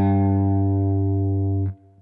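A single low G note, third fret of the low E string, picked on an electric guitar and held steady, then muted about one and a half seconds in.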